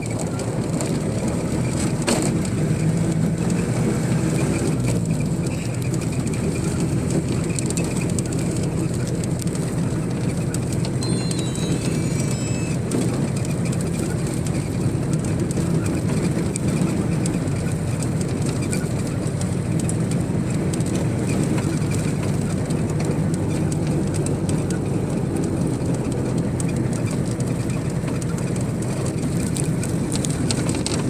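Steady road and engine rumble heard from inside a moving vehicle's cabin, with a short run of high stepped beeps about eleven seconds in.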